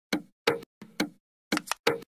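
Dry, short percussive knocks in a loose repeating rhythm, some in quick pairs, with no other instrument playing: a bare beat pattern, as at the start of a lofi track.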